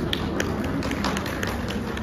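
Scattered hand clapping from a few people, irregular sharp claps several a second, over low room noise in a hall.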